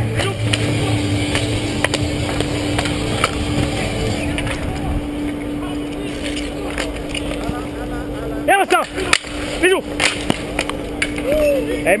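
Street hockey play heard through a helmet-mounted camera's microphone: steady movement noise and a low hum, broken by sharp clacks of sticks and ball on the paving. Players shout briefly about two-thirds of the way through.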